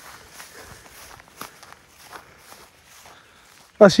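Footsteps along a dirt path through dry grass: soft, irregular steps of people walking. Just before the end a man's voice speaks loudly.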